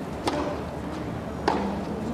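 Tennis ball struck by rackets in a baseline rally on a clay court: two sharp hits a little over a second apart, each with a brief ring, over a low hum of stadium ambience.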